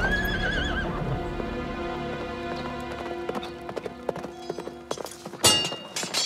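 A horse whinnies once at the start, a wavering call of under a second. Hooves then clip-clop under background music that holds steady notes, and a single loud knock comes near the end.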